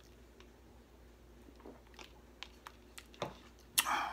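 A man taking a sip of a drink: a few faint mouth and swallowing clicks, then a breathy exhale near the end.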